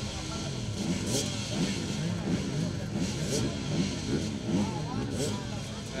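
Several motocross dirt bikes running together at the starting gate, their engines revving up and down in overlapping pitches.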